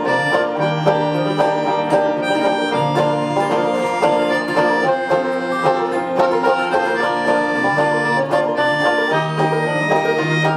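Instrumental passage by a banjo, a dobro resonator guitar and a pianica (melodica): the two stringed instruments pick and strum a steady rhythm of plucked notes while the pianica holds sustained reedy notes over them.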